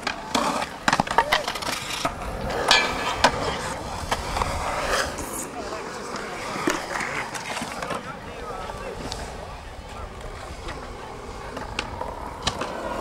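Skateboards on concrete: wheels rolling, with several sharp clacks of boards popping and landing in the first few seconds.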